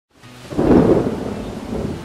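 A low rumble of thunder that swells in about half a second in and slowly fades.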